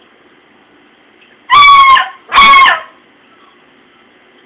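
A hunting dog barking twice, loud and high-pitched; each bark lasts about half a second, and the second follows close on the first.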